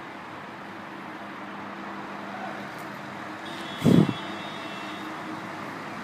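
Diesel truck engines running steadily, with one brief loud thump just before four seconds in.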